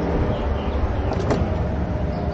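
A door's handle and latch click once, a little past a second in, as the door is opened. Under it runs a steady low rumble of outdoor background noise.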